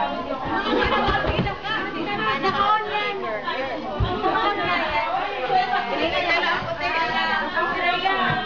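Several women chattering at once, their voices overlapping.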